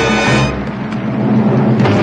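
Orchestral film-musical music. A full held chord cuts off about half a second in, leaving lower sustained notes, and a sharp hit comes near the end.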